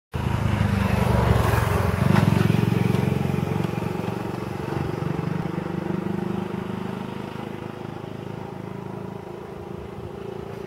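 A motor vehicle's engine running close by, loudest in the first few seconds and then slowly fading as it moves away.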